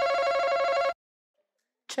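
Game-show face-off buzzer sounding as a contestant buzzes in: a steady buzzing tone that stops about a second in.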